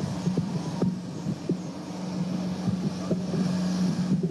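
Open-air city background picked up by the podium microphones: a steady low hum with traffic noise, and a few small knocks.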